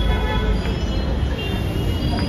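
Steady low rumble of outdoor background noise, with a few faint high tones above it.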